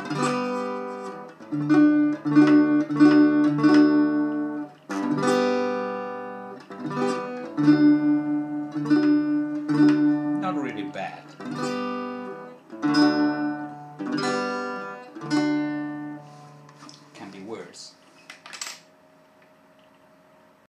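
Harley Benton travel-size acoustic guitar strummed in chords, each chord ringing on. The playing fades out near the end.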